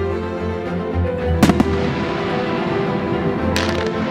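Fireworks going off over background string music: a few sharp cracks about a second and a half in, and a short crackle near the end.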